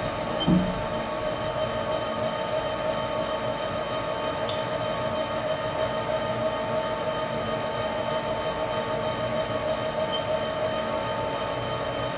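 Haas TL-2 CNC lathe running under program, a steady whine of several fixed tones from its spindle and drives, while the tool feeds along without yet cutting metal.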